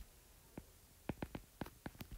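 Faint clicks of a stylus tip tapping on a tablet's glass screen while handwriting, about seven short ticks in quick irregular succession from about half a second in.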